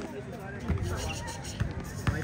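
A basketball bouncing a couple of times on an outdoor hard court, amid players' voices.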